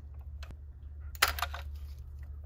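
Light clicks and rattles of a screwdriver and small metal linkage parts being handled, in a quick cluster a little over a second in. A steady low hum runs underneath.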